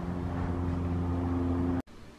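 A steady engine drone, a low hum that holds one pitch, cutting off suddenly near the end.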